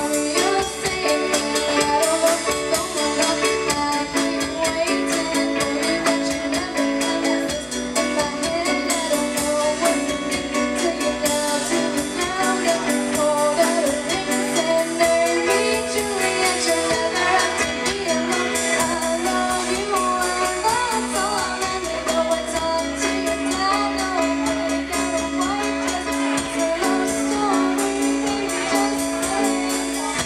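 A live rock band playing a song: a singer over electric guitar, bass guitar, keyboard and a drum kit. The music is loud and continuous.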